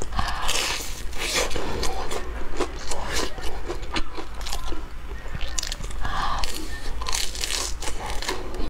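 Close-miked biting and chewing of a crisp, breadcrumb-coated deep-fried snack on a stick: the crust crunches in bursts that come and go, loudest about half a second in, around three seconds in, and again from six to seven and a half seconds.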